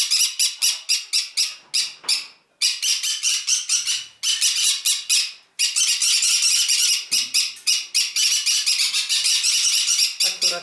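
A flock of green-cheeked conures screeching: rapid, harsh, high calls, several a second, with two short breaks. The racket is set off by a person having just come into the room; the birds are otherwise quiet.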